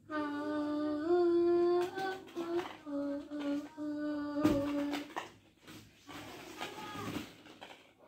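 A high voice singing long, wordless held notes that step up and down in pitch for about five seconds, with a sharp knock about four and a half seconds in. The singing then stops, leaving quieter, scattered sounds and a faint bit of voice near the end.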